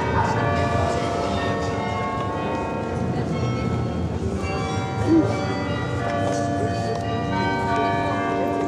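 Church bells ringing, many struck tones sounding and overlapping, over the murmur of a crowd. A brief, slightly louder sound about five seconds in.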